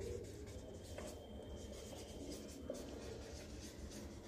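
Marker pen writing on a whiteboard, the tip faintly scratching and squeaking across the board stroke by stroke.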